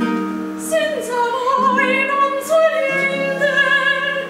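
A woman singing a baroque aria in a trained operatic voice with vibrato, over held notes of a harpsichord accompaniment.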